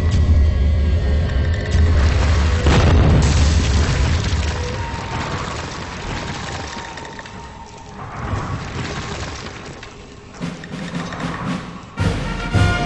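Cinematic intro sound effects of a stone wall cracking and breaking apart: a deep rumbling boom with a big crash about three seconds in, then a fading rumble of crumbling debris. A few sharp high ticks sound near the end.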